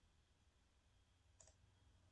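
Near silence: faint room tone with a low hum, and a single faint click about one and a half seconds in.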